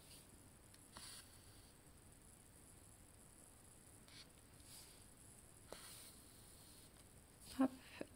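Faint, soft rustles of a needle and embroidery floss being pulled through cross-stitch fabric, a few brief swishes spread through otherwise quiet room tone.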